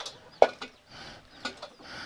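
A metal basin and a feed bowl knocking together in the hands: one sharp clink about half a second in, then a few lighter taps, with faint high chirps in the background.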